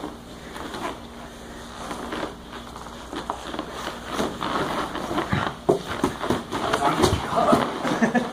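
Jiu-jitsu grappling on foam mats: gi cloth rustling and scuffing, with short knocks of hands, feet and bodies on the mat. Quieter at first, it turns busier and louder from about halfway in as one player is swept over.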